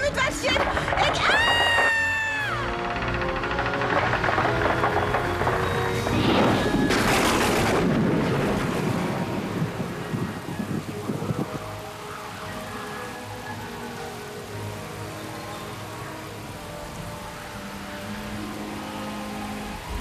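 Cartoon hurricane soundtrack: a long high pitched wail near the start, then a loud crash like thunder a few seconds later. After that, dramatic background music carries on more quietly over the storm.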